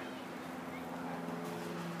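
A steady mechanical hum holding a few even tones, unchanging throughout.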